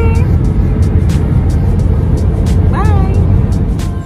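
Steady low road rumble inside the cabin of a moving car, with a brief pitched vocal sound about three seconds in.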